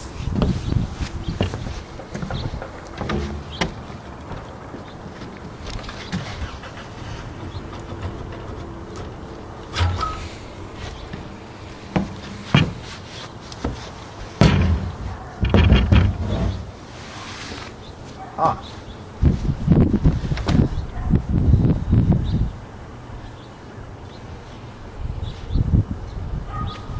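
Scattered metal clunks and knocks from a cylinder head being pulled off a small engine block and handled, with the loudest knocks in the second half.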